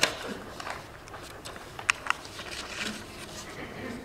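A quiet pause filled with faint room noise and low murmuring, with two short sharp clicks about two seconds in.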